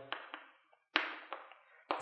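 Chalk on a blackboard as a number is written: a few faint ticks, then a sharper chalk stroke about a second in that trails off, with light taps after it.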